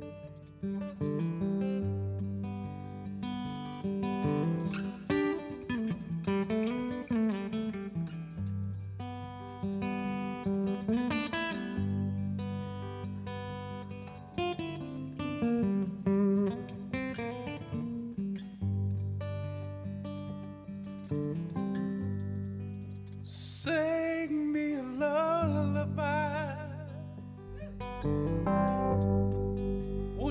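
Live performance of a slow song's intro: strummed acoustic guitar chords with long low notes underneath. About 23 seconds in, a male voice begins singing with vibrato.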